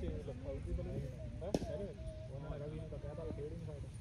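People talking near the microphone, too indistinct to make out, with a single sharp click about one and a half seconds in.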